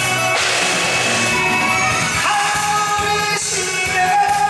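A male singer singing a Korean song live into a handheld microphone over amplified backing music, with a bright crash in the accompaniment about a third of a second in.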